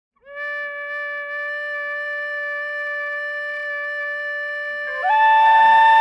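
A long, steady held note on a wind instrument, joined about five seconds in by a louder, higher held note as a second part enters.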